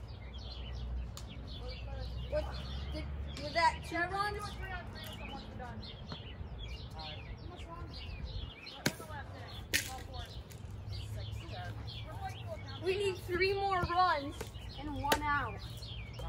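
Children's voices calling out across a yard, in two stretches, with two sharp knocks a little under a second apart near the middle, over a steady low rumble.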